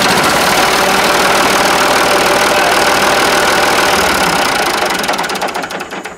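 Ford New Holland 3930's three-cylinder diesel engine running just after starting, then winding down and stopping near the end as the manual fuel shutoff lever on the injection pump is pulled and the fuel is cut off.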